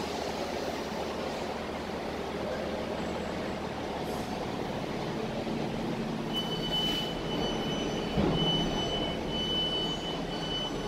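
2000 Ace passenger lift travelling to the landing after being called, heard through its closed doors: a steady low machinery hum, with a thud about eight seconds in. A high-pitched beep starts about six seconds in and stops and starts several times.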